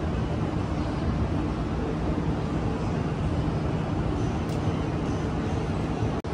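Steady outdoor background rumble, heaviest in the low end, with no distinct event standing out.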